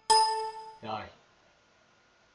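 A computer notification chime: one bright ding that rings and fades within about a second. It sounds as WinRAR finishes compressing a file into an archive.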